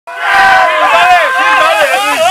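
Several men's voices talking over one another on a boat, loud and unclear.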